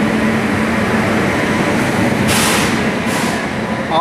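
Amrit Bharat Express passenger coaches rolling slowly along the platform, with a steady rumble and hum. Two short hisses come past halfway and again about three seconds in.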